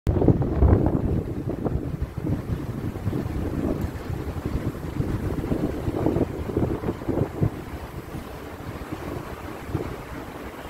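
Wind buffeting the microphone: an uneven, gusty low rumble, loudest in the first second.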